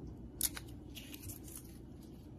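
Handling noise from a small wireless lavalier microphone as its foam windscreen is pulled off: a sharp click about half a second in, then brief scratchy rubbing.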